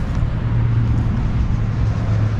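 A steady low engine hum, as of a motor vehicle running, over a wash of outdoor background noise.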